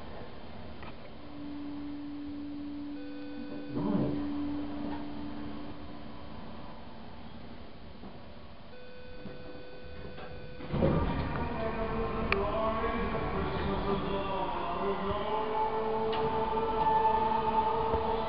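Hydraulic elevator car settling to a stop with a steady low hum while the doors are shut. About ten seconds in, the car doors slide open and store background music and ambience from the landing come in.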